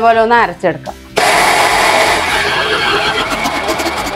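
Electric mixer grinder switched on about a second in and running steadily, its steel jar grinding appam batter while the lid is held down by hand.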